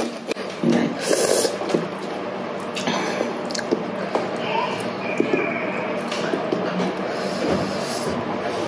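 Close-miked chewing and wet mouth sounds of someone eating rice vermicelli and lettuce by hand, with small clicks and squishes throughout and a short burst of noise just after a second in.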